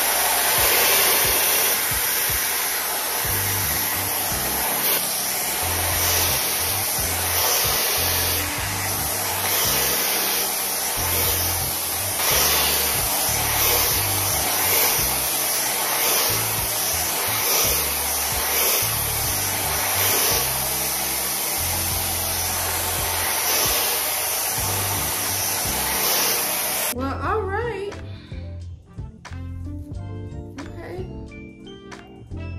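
TYMO hair dryer blowing at a steady loud rush through the hair, switching off suddenly near the end.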